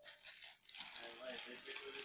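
Beaded necklace set with a gold-plated pendant rattling and clinking as it is pulled out of its plastic packet and handled.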